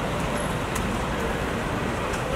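Steady city traffic noise, an even rumble and hiss with a few faint clicks on top.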